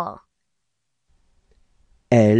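The end of a voice saying a letter name, then near silence with a faint low room noise and a few tiny clicks near the end.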